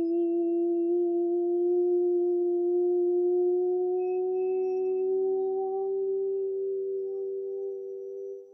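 A man's voice holding one long sustained toning note, its pitch creeping slowly upward, with fainter tones joining in the second half.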